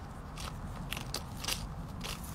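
Backyard hens pecking at a crisp lettuce leaf and tearing bits off it: a string of sharp snaps and crunches, about five in two seconds.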